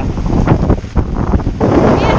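Strong gusty wind buffeting the microphone, a loud, uneven low rumble.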